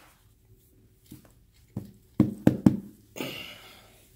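Microfiber towel being pressed and patted onto damp carpet to blot a spot: a few dull thumps, the last three close together, then a short rubbing, scuffing sound near the end.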